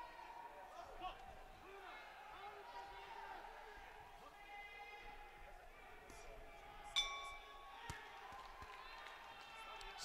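Quiet arena ambience with faint distant voices, then about seven seconds in a single sudden ringing strike of the boxing ring bell, ending the final round.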